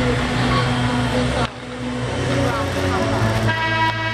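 Arena crowd noise with chatter, broken by a cut about a second and a half in. Near the end a loud, steady chord of several held tones begins.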